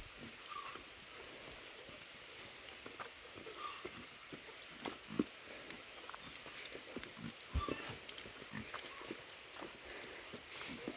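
Footsteps on a rocky dirt path: soft, irregular steps that come more often from about three seconds in, over a faint outdoor background.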